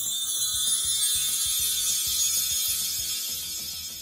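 Sound effect of a subscribe-button animation: a steady, high-pitched mechanical whir and hiss, over quiet background music.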